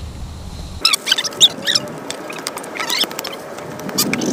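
Small birds chirping: irregular short high calls and clicks that begin abruptly about a second in.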